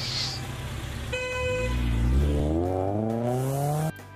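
Car horn toots once, briefly, about a second in. Then the car's engine revs up, its pitch rising steadily as it accelerates away, and the sound cuts off suddenly just before the end.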